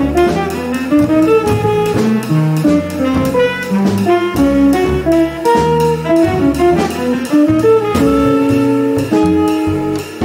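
Live jazz quartet playing: a tenor saxophone carries a moving line of notes over plucked upright double bass, semi-hollow electric guitar and drum kit.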